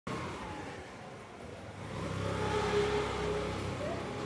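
A car driving along the street. Its engine builds from about two seconds in, is loudest near the three-second mark, then eases off over the street's background noise.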